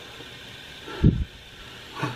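Dapol class 73 model locomotive's electric motor and gear train running steadily on a rolling road, with a brief low thud about a second in. The loco is drawing too much current, from either a motor problem or a mechanical obstruction in the gear train.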